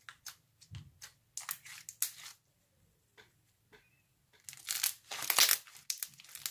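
Glossy pink slime with big and small foam beads being squished and stretched by hand, giving scattered crackles and bubble pops. It goes nearly quiet around the middle, then the crackling turns denser and louder from about two-thirds of the way in.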